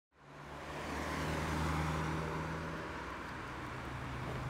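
Road traffic noise with a low steady engine hum, fading in at the start, swelling slightly and easing off as the hum drops a little in pitch.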